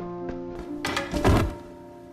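Background music with held notes, broken about a second in by a swish and a heavy thud as a high jumper's body lands on the inflated foam crash mat.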